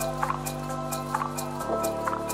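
Minimal electronic music from a DJ mix: sustained synth chords over a bass note, with a steady high hi-hat ticking and short high blips. The chord and bass shift to a new note near the end.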